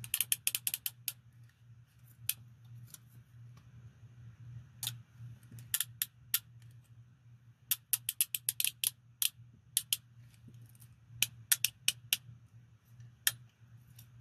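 Steel handcuffs worked in gloved hands: quick runs of metallic ratchet clicks as the cuff's jaw is swung through, near the start and again about two-thirds of the way in, with single clicks scattered between.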